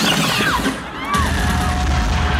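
Live concert sound: the crowd whoops and yells, then a bass-heavy dance track comes in hard about a second in, with a strong low beat and a held synth tone.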